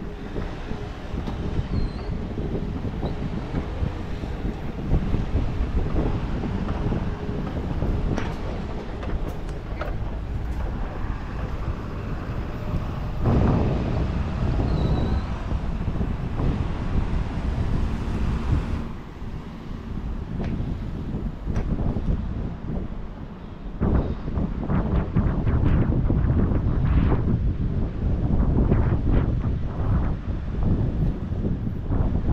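Street traffic with wind buffeting the microphone, a dense low rumble throughout. A louder passing surge comes a little before halfway, a quieter lull follows past the middle, and it builds again near the end.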